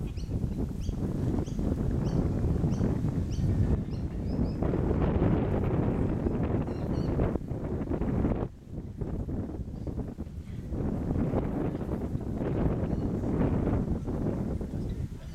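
Wind buffeting the microphone, with a dip just past the middle. A small bird chirps repeatedly, about twice a second, through the first few seconds.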